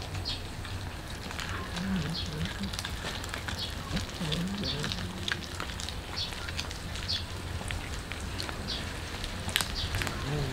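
Cats chewing whole raw fish: a run of small wet clicks and crunches, with a high chirp repeating in the background.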